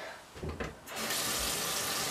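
Bathroom sink tap turned on about a second in, water then running steadily into the basin to wet a washcloth.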